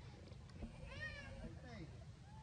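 A young monkey gives one short, high, squeaky call that rises and falls in pitch about a second in, with fainter lower calls around it.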